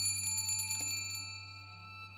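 Small brass hand bell shaken, its clapper tinkling rapidly for about a second. The clear, high ring then fades away.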